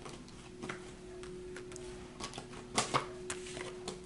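Tarot cards being handled and shuffled by hand: light irregular card clicks and taps, the sharpest just before three seconds in, over a faint steady hum.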